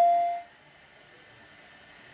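Steady single-pitch ring of public-address microphone feedback, which fades out about half a second in, leaving faint hiss.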